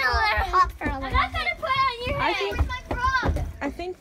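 Young children's high-pitched voices talking and exclaiming over one another, with no clear words.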